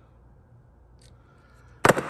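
Quiet room tone with a faint tick about a second in, then one sharp, loud click near the end.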